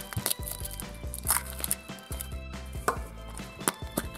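Foil wrapper of a Kinder Surprise chocolate egg crinkling as it is peeled off, with a few sharp cracks and clicks as the chocolate shell is broken and the plastic toy capsule is opened. Soft background music underneath.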